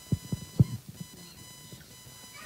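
A few short, soft low thumps in the first half-second or so, then quiet room tone with a faint steady electrical hum.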